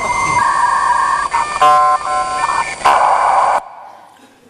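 A sequence of steady electronic tones that step from one pitch to another, some held for about a second, ending abruptly near the end.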